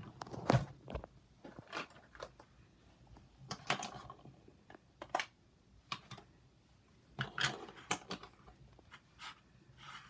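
Irregular light clicks, taps and scrapes of makeup containers and applicators being handled and set down on a vanity table.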